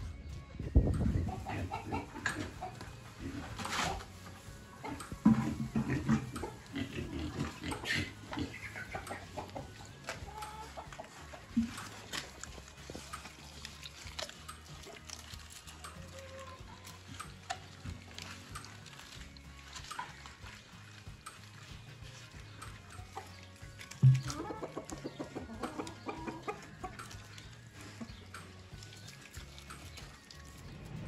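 Pigs grunting as they eat cabbage scraps, with chickens clucking.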